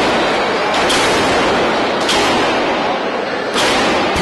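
Dense crowd noise in the hall, with three sharp smacks of forearm strikes landing between the wrestlers, roughly a second and a half apart.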